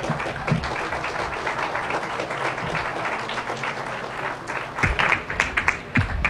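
Audience applauding steadily, with a few louder claps near the end.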